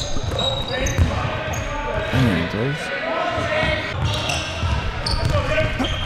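Basketball bounced and dribbled on a hardwood court during play in a large gym, the bounces coming as scattered knocks among players' faint voices.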